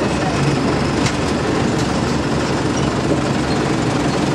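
Steady rumble of a vehicle's engine and road noise heard from inside the moving vehicle, with a brief click about a second in.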